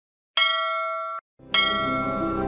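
A bell is struck twice. The first ring is cut off abruptly after less than a second. The second comes in just before the end over a low musical drone.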